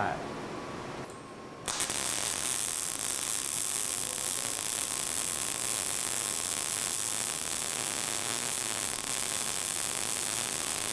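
Short-circuit-transfer MIG (gas metal arc) welding arc striking a little under two seconds in and then running steadily, laying the root pass in a steel V-groove joint. It is fed with 0.035-inch ER70S6 wire under 75% argon / 25% CO2 at about 18 volts and 125 amps.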